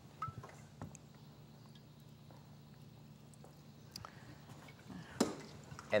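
Water poured faintly from a stainless steel kettle into a shallow clear plastic tray, over a low steady hum, with a few light knocks, the sharpest about five seconds in.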